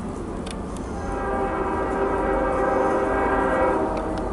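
CSX freight locomotive's air horn sounding one long blast of several notes together as the train approaches, starting about a second in and cutting off near the end, over a low rumble.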